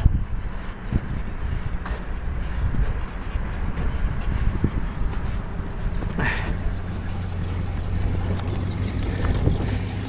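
Wind rumbling on a handheld phone's microphone, with small handling knocks. A low steady hum joins in during the second half.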